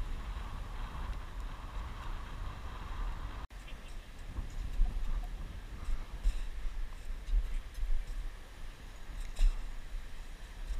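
Low, steady wind rumble on the microphone, with a few faint short clicks and a momentary dropout about three and a half seconds in.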